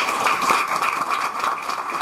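Audience applauding: a dense, steady patter of clapping.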